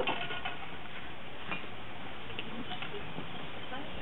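Steady outdoor background hiss with a few faint, light clicks and knocks as firebricks are handled on top of a brick kiln chimney stack.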